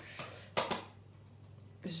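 A cloth wiping across a glass table top: a short rubbing stroke about half a second in, with a fainter one just before it.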